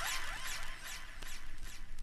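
Echoing repeats of a rising swept sound effect, several a second, dying away in the tail of a dub-style transition between reggae tunes.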